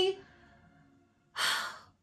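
A woman's single audible breath, about half a second long, a little past the middle, just after her voice trails off.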